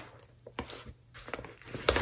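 Faint rustling and a few soft clicks from handling a fabric insulated lunch bag holding bottles and ice packs, with a slightly sharper click near the end.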